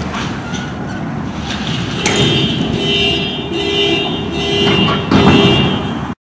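Vehicle horn sounding in several blasts with short gaps, starting about two seconds in, over street noise.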